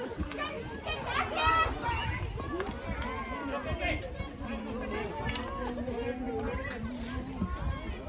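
Several people talking and calling out at once during a junior field hockey match, over a steady low outdoor rumble.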